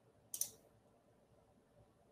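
A single computer mouse click, short and sharp, about a third of a second in.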